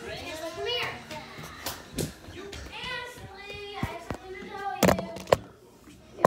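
A high, child-like voice making gliding, sing-song sounds over background music, with a few sharp knocks and bumps near the end.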